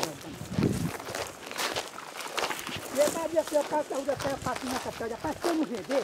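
Footsteps walking through dry grass and scrub. A voice talks indistinctly from about three seconds in.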